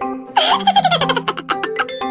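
Light marimba-style background music, over which a baby's giggle comes in about a third of a second in. The giggle is a run of quick pulsed laughs falling in pitch, lasting about a second and a half. A short bright click-like sound comes near the end.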